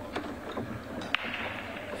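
Low, steady room tone in a pool hall, with a faint tap just after the start and one sharp, light click just past a second in.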